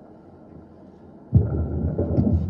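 Microphone handling noise: after a quiet pause, a handheld microphone is picked up and moved, giving a sudden loud low rumble with irregular thumps from about a second and a half in.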